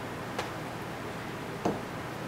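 Two light knocks on a wooden desk, a faint one just under half a second in and a louder one near the end, as a glass nail polish bottle and small items are set down among the other bottles.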